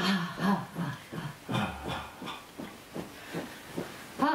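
A voiced 'ah' on the out-breath that falls in pitch, then a run of short, breathy, voiced pulses, several a second, as breath and voice are jolted out while the whole body is shaken.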